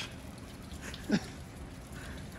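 Low, steady background noise with one short voice sound, a brief falling word or laugh, about a second in.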